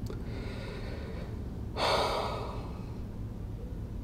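A woman's breathing: a faint breath early on, then a louder, rushing breath about two seconds in that lasts under a second.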